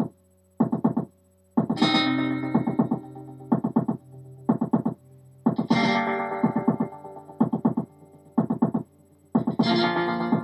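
Instrumental song intro on guitar: short groups of quick strummed chord stabs about once a second, with a longer ringing chord about every four seconds.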